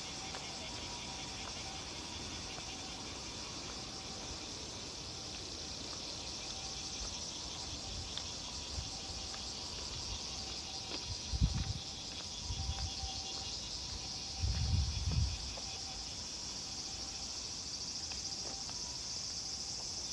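A steady, high-pitched chorus of insects chirring continuously. A few low thumps come about halfway through.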